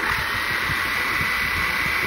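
Budget toy camera quadcopter's four small propeller motors starting up all at once and spinning at idle, the drone still resting and not lifting off. A sudden start, then a steady high whine over a buzzing hiss.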